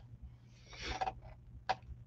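A pause between a man's remarks at a close microphone: a soft breath about a second in, with a small click near the start and another near the end, over a faint low hum.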